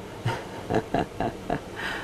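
A person chuckling softly: a few short, breathy laughs, one after another.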